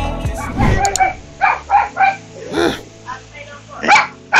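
Background music fading out in the first second, then a dog barking in short, separate barks, with a higher yelp partway through and another bark near the end.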